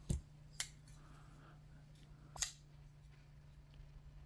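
Liner-lock folding knife with titanium handles being worked open and shut: three short, sharp clicks of the blade snapping and locking, the loudest about two and a half seconds in.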